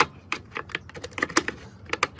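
Screwdriver turning a small screw into a plastic radio case: a run of quick, irregular clicks, bunched more closely partway through.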